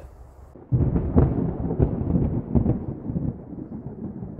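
A low, thunder-like rumble that starts suddenly a little under a second in and slowly dies away near the end.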